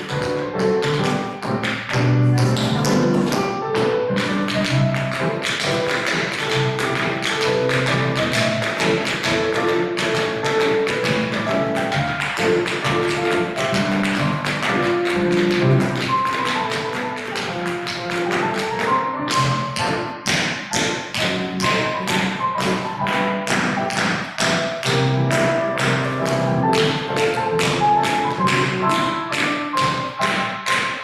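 Dance music with a steady beat plays while dancers step and tap their boots on a hard studio floor, practising line-dance steps.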